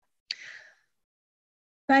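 A woman's short intake of breath, about half a second long, a third of a second in.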